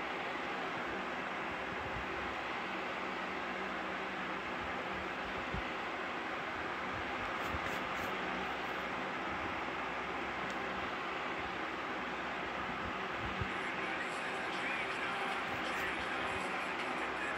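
Steady hiss with a faint low hum, broken only by a few faint clicks.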